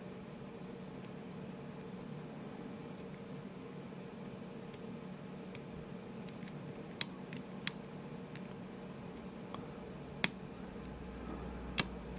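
Lock pick working the pin stacks of an ASSA Ruko Flexcore high-security cylinder held under tension: faint scattered metallic ticks, with a few sharper clicks in the second half, over a faint steady hum.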